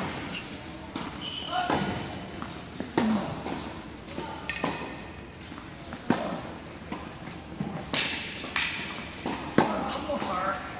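Tennis balls struck by racquets and bouncing on an indoor hard court, in a sharp pop every one to two seconds, echoing in the large hall.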